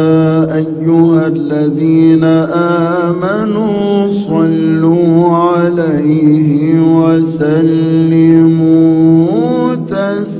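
Male voice chanting an Islamic ibtihal (devotional supplication) in a long, wordless, ornamented melisma that wavers up and down over a steady held drone, with a rise in pitch near the end.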